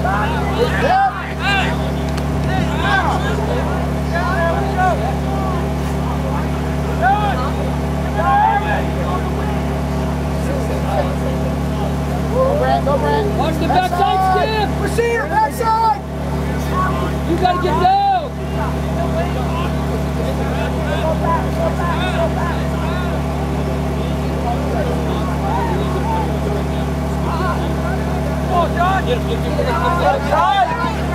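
Scattered shouts from lacrosse players and spectators, heard over a loud, steady low mechanical hum. The calls come thickest about a second in, again from about twelve to sixteen seconds, and once more near eighteen seconds.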